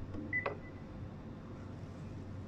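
A single short, high electronic beep with a click about half a second in, over a steady low hum.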